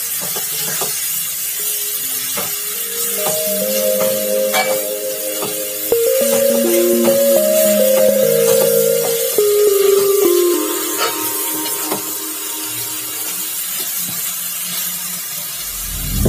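Background music, a slow melody of held notes, over stir-frying in a wok: a spatula scraping and knocking against the pan, with faint sizzling.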